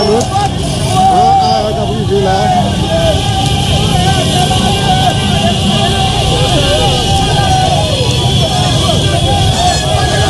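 Crowd of many voices shouting and calling over one another, with motorcycle engines running underneath as a steady low rumble.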